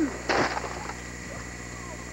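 A brief breathy vocal sound close to the microphone, like a gasp or exclamation, about a third of a second in. It is followed by quiet, steady camcorder hiss and hum.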